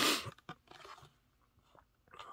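A plastic blister pack on a cardboard toy-car card being handled: a short loud crinkle at the start, a few faint clicks and taps, then quiet.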